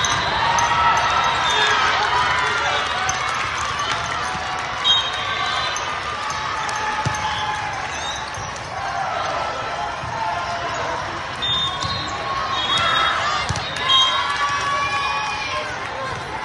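Indoor volleyball rally in a large hall: sharp ball hits, the loudest about five seconds in and again near fourteen seconds, sneakers squeaking on the sport court, and players' and spectators' voices calling throughout.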